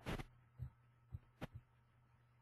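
A few faint low knocks and one sharp click about one and a half seconds in, from handling at a computer desk with a mouse, over a steady low electrical hum.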